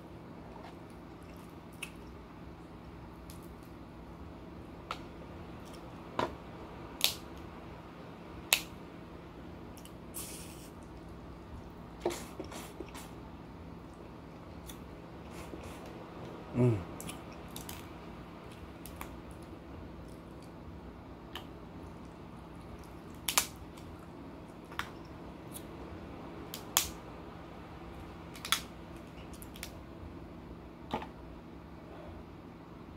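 Snow crab leg shells cracking and snapping as they are broken apart by hand, in scattered sharp cracks a few seconds apart, with soft chewing between them. A short falling vocal sound comes about halfway, over a steady low hum.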